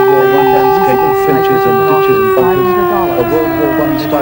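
A long, loud held tone that stays level and then slowly slides down in pitch from about halfway, with a voice talking beneath it.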